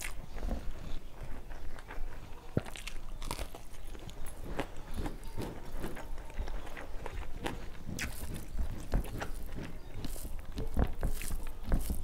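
Close-miked chewing of a mouthful of food, with wet mouth clicks, while fingers mix rice on a steel plate; many small irregular clicks throughout.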